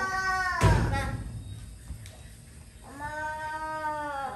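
Baby monkey giving two long, steady, high-pitched calls, one at the start and a longer one near the end. A loud thump comes just over half a second in.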